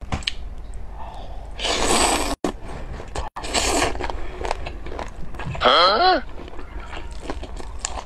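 Close-miked eating of spicy boneless chicken feet with chopsticks: bites and chewing with many small crunchy clicks. There are two louder noisy bursts early on and near four seconds, and a short voiced 'mm' about six seconds in.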